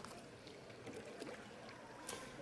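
Faint water moving and lapping in a baptismal pool, with quiet room tone.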